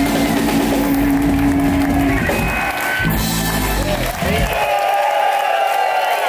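Live blues-rock band (electric guitar, electric bass and drum kit) playing the closing bars of a song. The band stops about four and a half seconds in, and audience applause and cheering follow.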